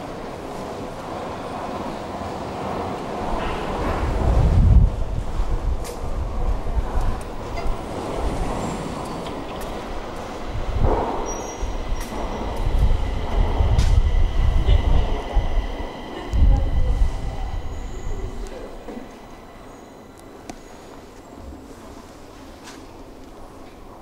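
Stockholm metro (tunnelbana) train moving through the station, a heavy low rumble that swells and eases several times with a steady high whine over it, fading away about three-quarters of the way through.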